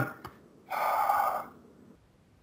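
A man's breathy sigh of distaste, one exhale lasting under a second.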